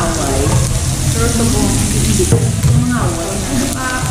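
Pork belly sizzling steadily on a tabletop Korean barbecue grill plate, with a woman talking over it.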